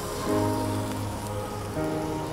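Flux sizzling steadily on a circuit board held in the molten solder of a solder pot, under background music with held notes that change twice.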